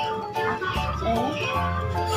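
Background music: a melody of held notes over a low bass line.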